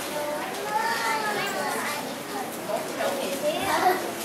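Children's voices talking over one another, the chatter going on throughout.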